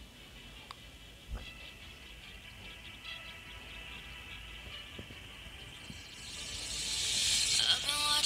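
A song playing faintly through the tiny speaker of a Xiaomi Mi True Wireless Earbuds Basic 2 earbud, thin and distant, growing louder near the end as a vocal-like lead comes in.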